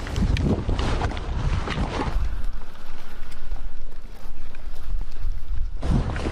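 Wind buffeting a body-worn camera's microphone as a low rumble, stronger from about two seconds in, with rustling and knocks of a rifle and sling being handled.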